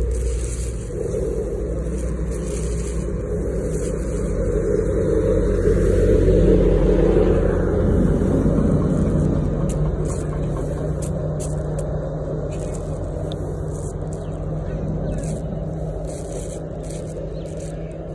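A steady, low motor-like hum with scraping and rubbing noise close to the microphone; it grows louder near the middle, then slowly fades.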